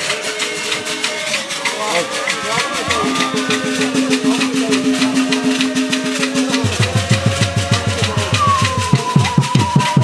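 Church dance music on drums with a fast, even beat and shakers, with voices. About two-thirds of the way in, deep drum strokes come in at about four a second, and near the end a high note is held.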